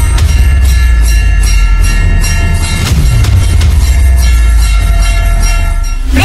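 Instrumental song intro: electronic music with heavy bass and a steady beat of about three clicks a second under a sustained synthesizer chord.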